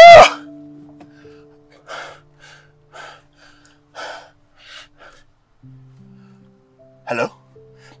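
A loud cry of "Ah!" at the start, then a dramatic film score of low held notes, with a few short breathy sounds over it.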